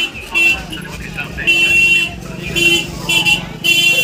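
A high-pitched, horn-like toot sounds in short blasts of uneven length, five or six times, over busy background noise.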